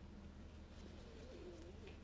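Near-silent room tone, with a faint, low, wavering bird coo in the second half.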